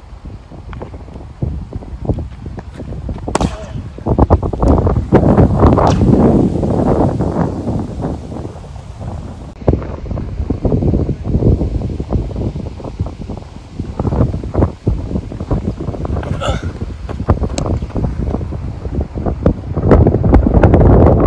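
Wind buffeting the microphone in uneven gusts, with indistinct voices underneath.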